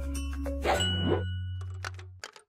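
Short electronic logo sting: bright chime-like dings and clicks over a held low bass tone, fading out near the end.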